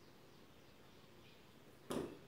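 A single thump near the end as feet come down onto a tiled floor while a man lowers himself out of a headstand.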